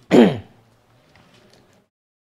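A man clears his throat once, a short sound falling in pitch just after the start.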